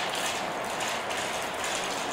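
Marbles rolling along a plastic marble-race track, a steady mechanical rolling noise.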